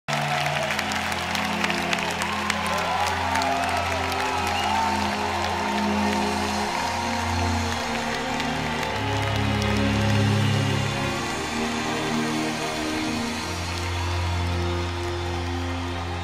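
Slow, sustained synthesizer chords of a live pop concert's intro, the low notes held and changing every second or two. Over them a large crowd cheers, screams and whistles, with clapping that is thickest in the first few seconds.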